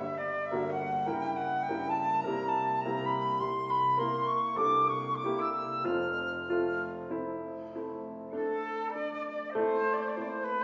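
Concert flute and grand piano playing classical chamber music: a flute melody climbing over piano chords, softening for a moment a little past halfway before both pick up again.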